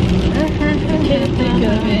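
Car cabin noise while driving in heavy rain: a steady low road rumble with rain pattering on the roof and windshield.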